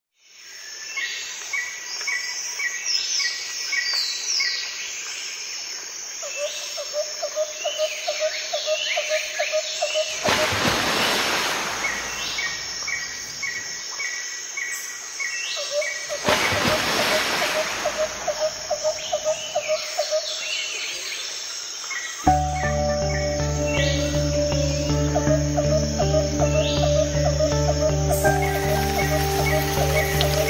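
Birds chirping and trilling in a repeating pattern, broken twice by a rushing swell of noise, then a soft music track with a steady low bass comes in about two-thirds of the way through.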